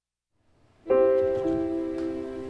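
Silence, then background piano music begins about a second in: a chord struck and left to ring and fade, with a further note joining shortly after.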